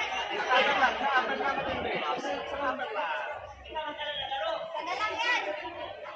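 Many overlapping, indistinct voices of a crowd chattering in a large hall.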